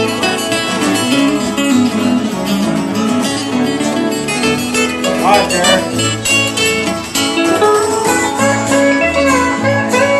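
Live country band playing an instrumental break, a guitar taking the lead over the rhythm guitars, bass and percussion, with a quick rising run about halfway through.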